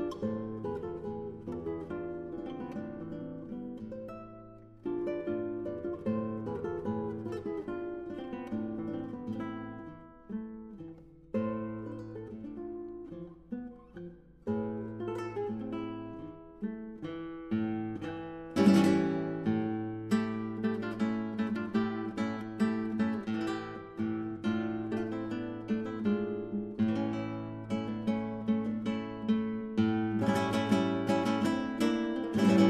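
Background music on acoustic guitar: plucked notes and strummed chords in phrases with short pauses, with one sharp strummed chord a little past the middle.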